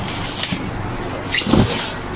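Plastic packaging crinkling as plastic-wrapped pressure-washer parts are handled: a short crinkle about half a second in and a louder one around a second and a half. Underneath runs a steady background noise with a low hum.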